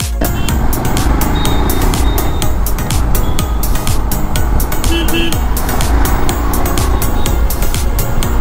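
On-board riding noise from a Royal Enfield Himalayan BS6 motorcycle moving through city traffic: a steady mix of engine, wind and road noise. A short horn beep sounds about five seconds in.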